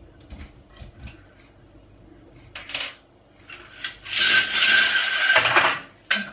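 A few light clicks and knocks and a short scrape as a kitchen window is shut. Then a venetian blind is let down, its slats and cord running with a steady rasping whirr and a thin whine for about a second and a half near the end.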